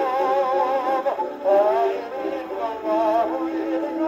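A 1925 Grey Gull 78 rpm shellac record playing on an acoustic phonograph with a gooseneck tone arm. A wavering melody with strong vibrato sounds over band accompaniment, thin and boxy with almost no bass.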